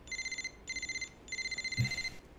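Mobile phone ringing: a high electronic trilling ring in three short bursts.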